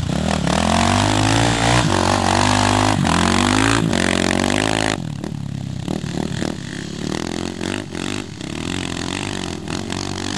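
Single-cylinder KTM dirt bike engine close by, revving with its pitch rising and falling several times. About halfway through the sound drops off sharply to quieter, more distant dirt bike engines riding through sand, with gusty noise.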